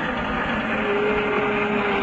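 Zipline trolley pulleys rolling along a steel cable under a rider's weight: a steady rushing whir.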